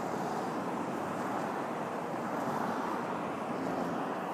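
Steady city street noise of road traffic, an even hum with no single vehicle or event standing out.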